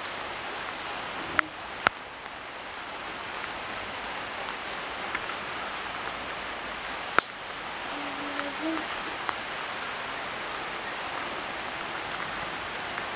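Light rain falling steadily, with a few sharp ticks: two close together about a second and a half in and one more past the middle.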